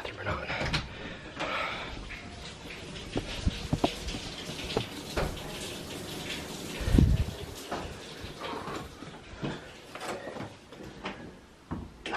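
Scattered rustling, soft knocks and clicks of someone moving about a small room and handling a camera, with one heavier low thump about seven seconds in.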